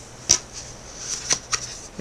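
Baseball trading cards being handled as the next card in a pack is pulled from the stack, with a few short snaps of card stock and a soft rustle.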